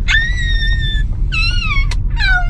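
A young girl squealing with excitement in two long, high-pitched shrieks. The first is held for about a second; the second is shorter and drops in pitch near the end. Both are heard inside a car over a steady low rumble.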